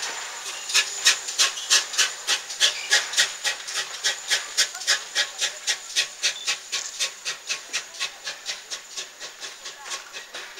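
Steam locomotive pulling away, its exhaust chuffing in a steady rhythm of about three beats a second that grows fainter as the train draws away.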